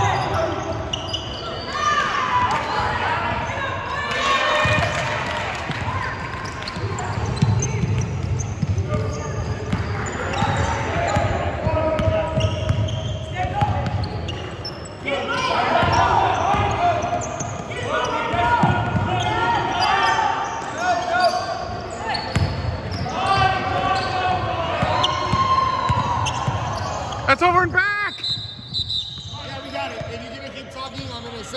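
Live basketball game in a gym: a basketball bouncing on the hardwood court and players' and spectators' voices calling out, with the echo of a large hall. A few high sneaker squeaks near the end.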